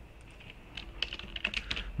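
A quick run of keystrokes on a computer keyboard, starting about a third of the way in.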